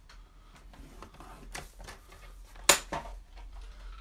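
Cardstock being scored on a paper trimmer: a run of small clicks and rustles from the blade carriage and the paper, with one sharp, loud click nearly three seconds in.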